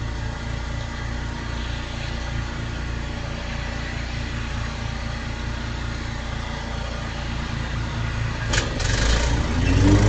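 Small gasoline lawn mower engine running steadily. About eight and a half seconds in there is a sharp knock and a short scraping burst, and near the end the engine gets louder and its pitch rises.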